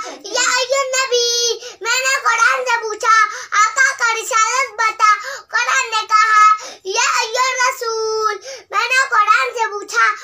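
A small boy chanting in a sing-song voice, in melodic phrases broken by short pauses, holding a long note about a second in and again near the end.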